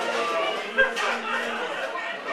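Indistinct background chatter of voices, with one sharp click a little under a second in.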